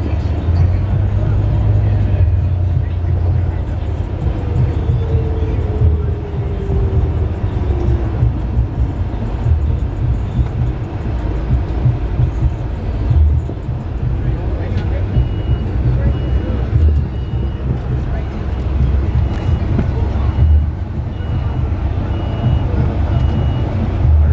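Low engine and road rumble heard from inside a moving passenger vehicle. A high, evenly spaced beep repeats about one and a half times a second through the second half.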